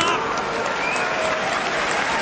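Wrestling arena crowd applauding, with scattered voices calling out among the clapping.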